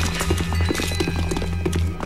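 Cartoon chase music with a pulsing low bass under quick clattering hits, about five a second.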